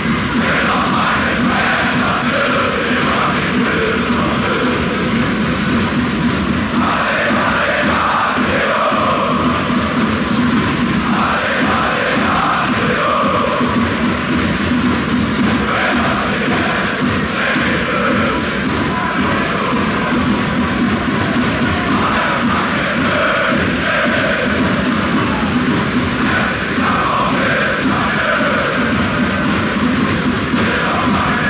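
A large crowd of football supporters singing a chant together, loud and unbroken.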